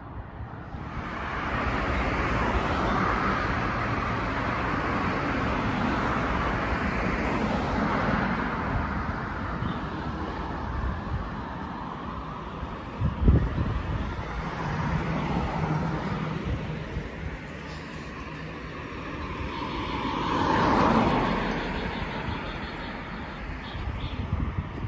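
Road traffic on a wide city street: vehicles passing with a steady tyre-and-engine hiss that swells as one goes by near the end. A single sharp knock about halfway through.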